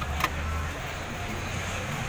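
Steady low hum with one short, sharp click about a quarter of a second in.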